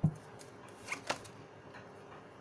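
A deck of tarot cards being handled: a soft thud right at the start, then two light clicks of cards about a second in.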